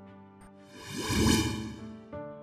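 A whoosh sound effect that swells up and fades away in about a second, over soft background music.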